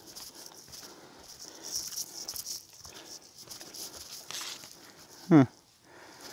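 Faint, irregular footsteps of a hiker walking through leafy forest undergrowth, under a steady high hiss. A short spoken "huh" comes near the end.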